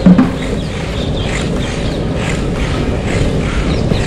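Longboard wheels rolling over rough, wet asphalt, a steady gritty rumble with wind on the microphone.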